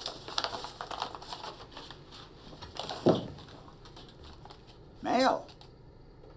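Pen writing quickly on a small spiral notepad: a run of scratchy strokes over the first couple of seconds, then a softer scrape near the middle. About five seconds in, a short vocal sound from a man, the loudest thing here.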